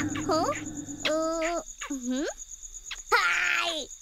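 A cartoon child's wordless vampire noises: a few short pitched grunts, one sliding down in pitch, then a raspy growl near the end. Behind them, crickets chirp steadily.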